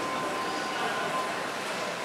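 Steady background din of a busy, echoing hotel lobby: indistinct murmur of people over an even hum, with a faint held tone in the first second.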